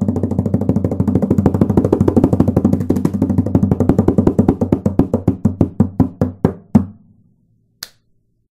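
A pitched instrument struck over and over in a fast, even run, starting at about ten strikes a second and slowing to a few a second as it fades, stopping just before the end; a single sharp click follows.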